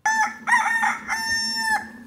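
A rooster crowing once: one long crow of about two seconds, made of a short opening note and then long held notes with a brief break in the middle.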